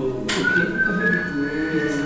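Whistling over background music: a high held tone that steps slightly up and down in pitch, starting just after a short sharp click.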